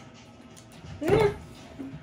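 A short, high vocal cry from a girl about a second in, rising then falling in pitch.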